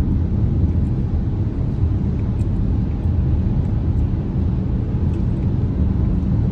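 Steady low rumble of road and engine noise inside a car's cabin while driving in highway traffic.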